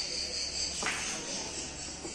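Steady high-pitched insect chirring, with one sharp click about a second in.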